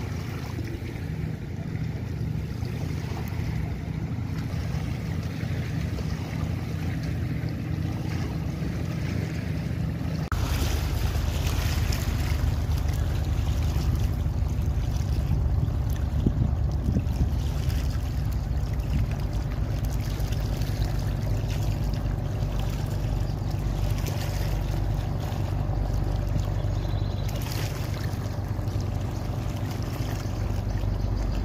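A speedboat running past at speed, its engine drone mixed with wind on the microphone and water wash. About ten seconds in the sound changes abruptly to a large express passenger launch running by at speed, louder and fuller.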